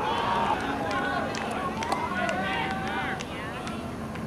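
Several voices of ultimate frisbee players and sideline teammates shouting and calling out across an open field during a point, overlapping one another, with a few sharp clicks among them.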